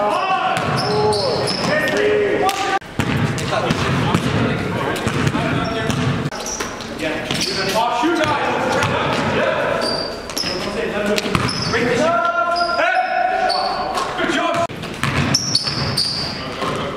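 A basketball game in a large gym: the ball bounces on the court floor, sneakers give short high squeaks, and players shout and call out, loudest near the end.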